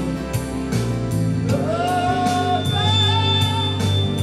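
A man singing into a microphone over a backing track with a steady beat; about a third of the way in he glides up into long held notes.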